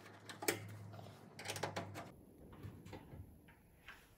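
A scatter of light clicks and knocks, the sharpest about half a second in and a cluster around a second and a half in: a screwdriver working the casing screws while the panels of a heat pump's outdoor unit are handled and lifted off.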